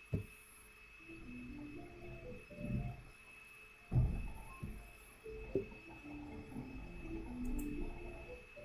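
A faint tune of short, steady notes stepping up and down in pitch, with a few knocks; the loudest knock comes about halfway through.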